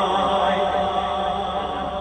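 A steady, held vocal drone heard through a loudspeaker system, one unbroken pitch with its overtones, slowly fading away.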